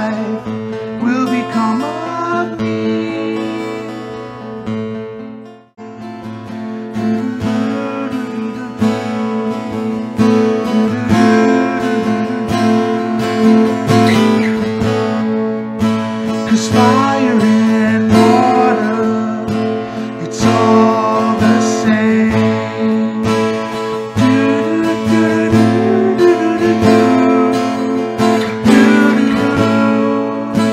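A man singing while strumming chords on an acoustic guitar; the playing stops briefly about six seconds in, then resumes.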